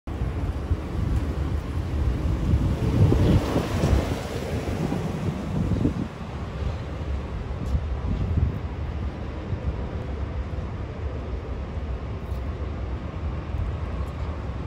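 Wind buffeting the microphone: a steady, rough low rumble that is a little louder in the first six seconds.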